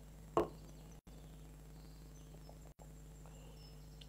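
Quiet room tone with a steady low electrical hum, one short soft sound about half a second in, and two brief moments where the audio cuts out completely.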